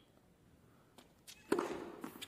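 A tennis serve: after a hushed pause with a couple of faint taps, a racket strikes the ball sharply about one and a half seconds in, with a short ring of the hall after it.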